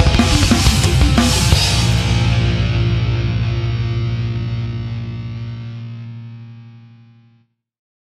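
Heavy metal band ending a song: distorted electric guitars, bass and drums strike a final chord. The drums stop about one and a half seconds in, and the chord rings out and fades away over the next six seconds.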